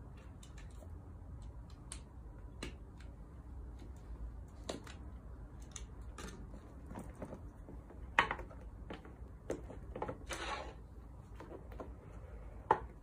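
Small cardboard box being handled and its seal cut with a small cutter: scattered clicks and scrapes, a sharp tap about eight seconds in and a longer scrape shortly after.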